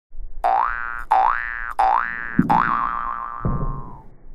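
Cartoon boing sound effect played four times in quick succession, each a springy tone rising in pitch, the fourth one wobbling and then held until near the end. Two low thumps come in under the last two boings.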